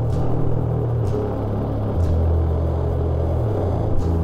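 Slow doom/sludge metal: heavily distorted low notes are held, shifting to a new note about halfway through, with a cymbal struck roughly once a second.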